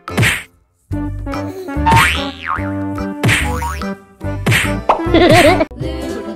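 Upbeat background music overlaid with cartoon comedy sound effects: about five sharp whack-and-boing hits with springy pitch glides, and a brief gap in the sound about half a second in.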